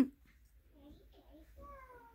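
Mostly quiet, then a faint single drawn-out call that falls slowly in pitch, starting near the end.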